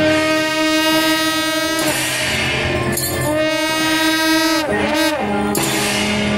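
A suona, the Chinese double-reed horn, playing procession music in long held, reedy notes. About three-quarters of the way through, the pitch slides down and settles on a lower held note. Percussion beats run underneath.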